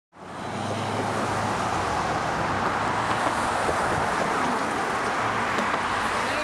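Steady city road traffic: cars driving past with tyre and engine noise, fading in sharply at the very start.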